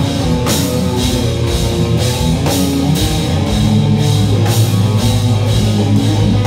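Heavy metal band playing live: distorted electric guitar and bass over a drum kit, with drum hits about twice a second.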